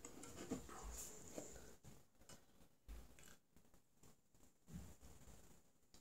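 Near silence, with a few faint clicks and taps from handling a freshly opened beer can and a glass.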